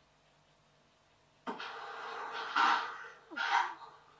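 Playback of audio recorded by a CCTV microphone on a DVR, heard through a TV speaker: a noisy hiss starts abruptly about a second and a half in, with two louder bursts of sound near the end.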